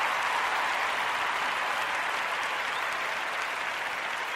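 Applause, slowly fading away.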